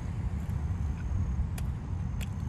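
A big bite into a burger and chewing with the mouth full, with a few faint mouth clicks, over a steady low rumble in the car cabin.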